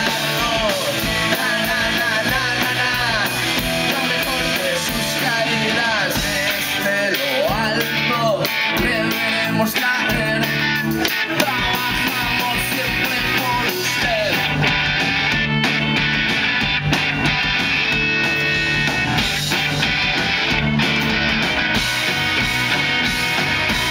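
Rock band playing live on electric guitars, electric bass and drum kit, steady and loud with no break.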